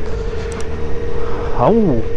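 Motorcycle engine running steadily at low road speed, heard from the rider's position as a low rumble with one steady tone through it. Near the end, a short voice-like sound rises and falls in pitch.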